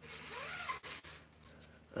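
Fishing rod sleeve being slid over a rod, a short rasping rub lasting under a second, followed by a few faint ticks.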